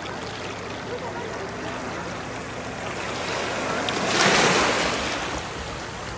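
Small waves lapping and washing in shallow sea water right at the camera held at the surface, with one louder rush of water about four seconds in that swells and eases over about a second.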